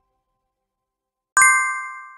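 A single bright ding sound effect, like a notification bell, about a second and a half in. It rings with several clear tones and fades away over about a second, after near silence.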